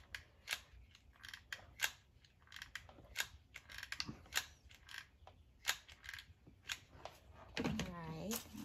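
Hot glue gun's trigger clicking over and over at uneven intervals as glue is squeezed out: a string of a dozen or so sharp clicks.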